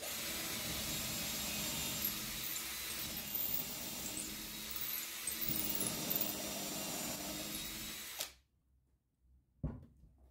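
Ozito cordless drill running steadily for about eight seconds as a twist bit bores a pilot hole into the end of a timber board, then stopping suddenly. A single knock follows near the end.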